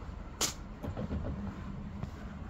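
Low, uneven outdoor rumble, with one sharp click about half a second in.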